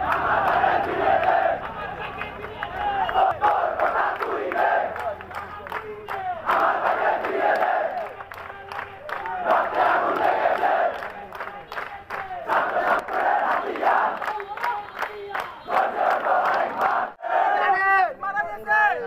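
Crowd of protesting young men chanting slogans together, loud shouts coming in repeated bursts of a second or two with short breaks between.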